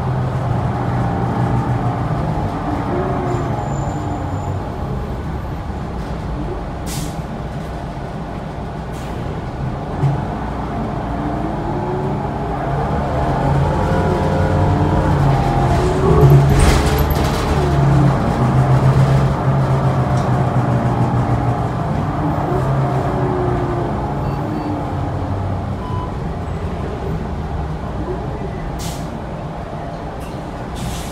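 Cabin sound of a New Flyer Xcelsior XD40 diesel city bus under way: the engine and drivetrain run steadily, their pitch climbing and falling as the bus speeds up and slows, with a few sharp clicks and knocks from the body, loudest about halfway through.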